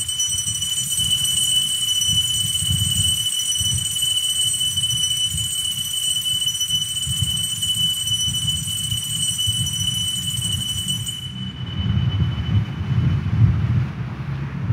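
Altar bells rung for the elevation of the consecrated host: a steady, high, continuous ringing that cuts off about eleven seconds in, over a low rumble.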